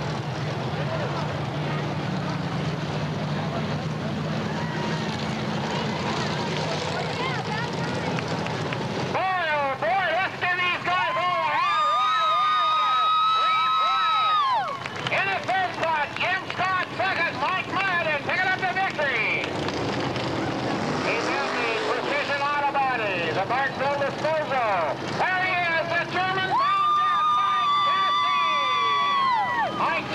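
Dirt-track modified race car engines running for the first nine seconds or so. After that, a loud voice rises and falls and then holds a long note, twice, over the background noise.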